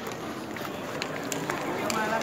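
Quick running footsteps on a hard tiled floor, irregular ticks over a busy hall's murmur of voices.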